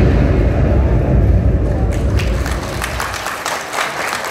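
Bass-heavy electronic dance music trailing off as the track ends, and audience applause breaking out about two seconds in.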